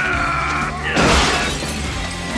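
Glass shattering in a sudden loud crash about a second in, over dramatic film score music.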